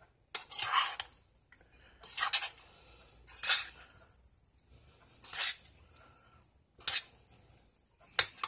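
Metal spoon scraping and clinking against a stainless steel saucepan while stirring a thick mix of rotini pasta and creamy soup, about five separate strokes with short pauses between.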